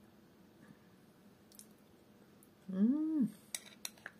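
A woman's closed-mouth "mm" of enjoyment, rising then falling in pitch, while tasting soaked oatmeal and chia, followed by two sharp clicks of a metal spoon against a glass bowl near the end.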